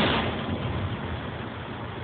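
An aerial firework shell bursting with one loud bang at the start, its rumbling echo fading over about a second into a steady background rumble.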